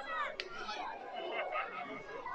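Crowd of onlookers chattering, several voices talking over one another, with one short click about half a second in.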